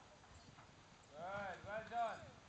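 A person's voice calling out twice in the second half, each call rising then falling in pitch, over faint hoofbeats of a ridden horse on a sand arena.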